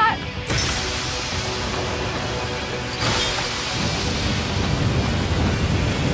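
Background music over a steady rushing roar from a large training fire under water spray, which grows heavier in the bass about halfway through.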